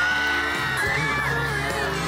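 Children screaming over background music.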